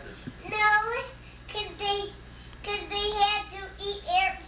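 A young boy's high voice in three drawn-out, sing-song phrases, with short pauses between.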